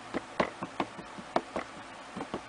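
A Memento ink pad's plastic case dabbed repeatedly onto a clear rubber stamp mounted in an acrylic stamp positioner, inking it: a quick, uneven run of light taps, several a second.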